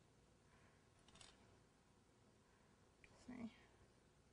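Near silence: room tone, with two faint brief sounds, one about a second in and a slightly louder one about three seconds in.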